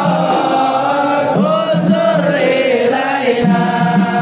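A crowd of men chanting an Arabic devotional song together, in long drawn-out lines whose melody rises and falls.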